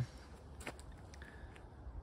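Quiet outdoor background: a steady low rumble with one faint click about two-thirds of a second in.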